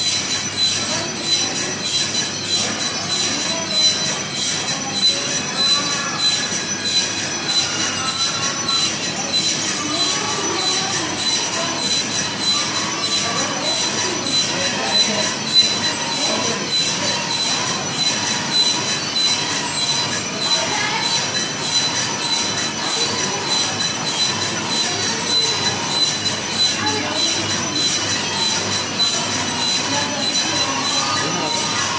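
Milk separator machine running with a steady high-pitched whine over a continuous mechanical rattle.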